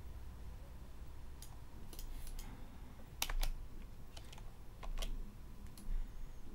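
Irregular clicking of computer keys being pressed, about a dozen scattered clicks beginning a second and a half in. The loudest come in a quick pair about three seconds in and again near the end, each with a dull thump under it.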